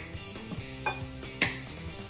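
Background music, over which come three short, sharp knocks and clinks, the loudest about one and a half seconds in: a wooden pestle working boiled cassava in a small wooden mortar, and a spoon against a metal bowl.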